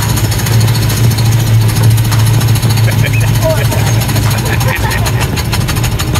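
Small engine of a ride-on park car running steadily under throttle, a low hum with a rapid even chug.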